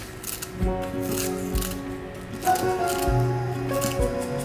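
Background music with a low beat, over kitchen scissors snipping through a crisp sheet of roasted seaweed (gim) several times.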